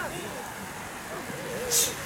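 Faint background chatter of people's voices, with a short, sharp hiss a little before the end.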